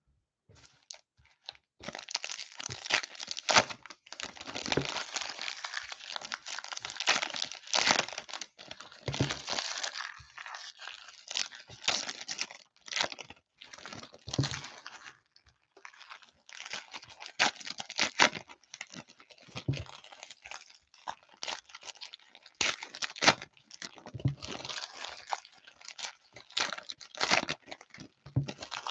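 Foil trading-card pack wrappers, 2023 Topps Heritage High Number baseball packs, being torn open and crinkled by hand. It starts about two seconds in and comes in irregular bursts of crackling, with short pauses between packs.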